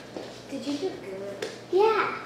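Children's voices, faint and indistinct, ending in a short, louder vocal sound near the end, with a single sharp click about a second and a half in.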